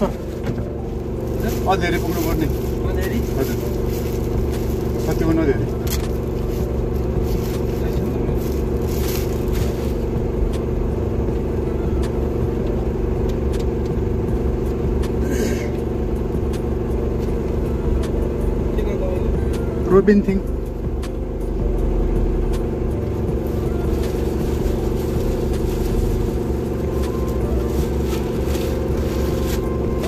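Car engine running, a steady low hum heard from inside the cabin. A few short voice sounds come over it, the loudest about two-thirds of the way through.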